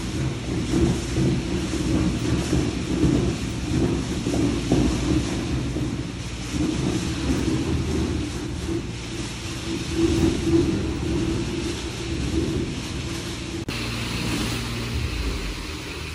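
A pneumatic screed pump pushing semi-dry sand-cement screed through its delivery hose: a continuous low rumble that rises and falls as the material surges through.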